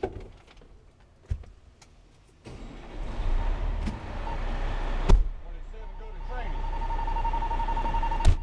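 Inside the cab of an HME/Ferrara fire ladder truck: clicks and knocks from the cab, then the truck's diesel engine running loud under way from about two and a half seconds in, with a sharp bang a little after halfway. A steady high electronic tone comes in near the end.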